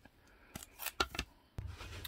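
A few faint clicks and scrapes of hard plastic graded-card slabs being handled, coming in short bursts about half a second to a second and a half in.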